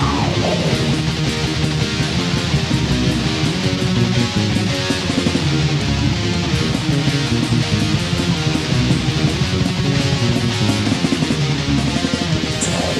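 Raw black metal from a 1998 cassette demo: distorted electric guitars strummed over bass and drums in a dense, unbroken wall of sound with lo-fi tape quality.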